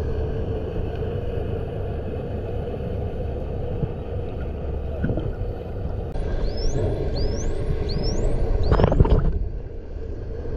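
Steady low underwater rumble with a hum. About six seconds in, a bottlenose dolphin gives four short rising whistles in quick succession, followed by a short, loud rush of noise.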